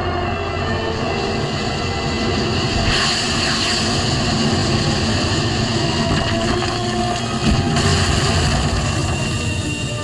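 Action-cartoon soundtrack: dramatic score mixed with sound effects, including the steady hum of a rotor-driven flying craft. A rushing noise swells about three seconds in and cuts off sharply near the eight-second mark.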